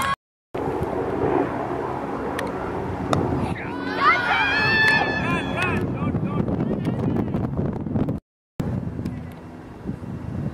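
Wind rumbling on the camera microphone over an open playing field, with young players' voices calling out from across the field a few seconds in. The audio cuts out briefly twice, at edits.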